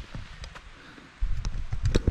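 Low rumble and light thumps of a hiker walking with the camera, getting much louder about a second in.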